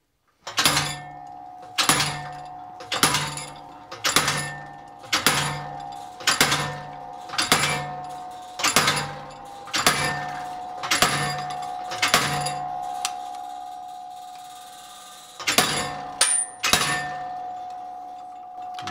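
Treadle hammer's flat dies striking two hot crossed square bars to forge a half lap joint: eleven even blows about one a second, a pause, then two more near the end, with a steady metallic ring carrying on between blows.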